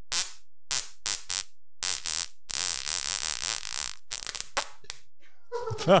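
A man farting into a microphone: a run of short bursts with one longer one of about a second and a half in the middle.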